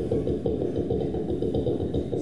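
Mouth-made imitation of a two-stroke chainsaw engine idling, beatboxed into a hand-cupped microphone: a rapid, even, low puttering.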